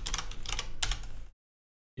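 Computer keyboard typed on in a quick run of key clicks that stops about a second and a half in.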